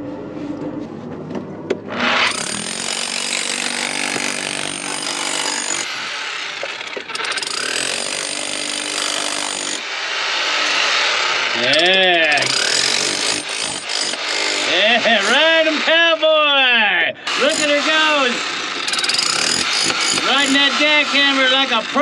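Corded electric jackhammer running, chipping into rock, starting about two seconds in. In the second half, a pitched sound that rises and falls several times rides over the hammering.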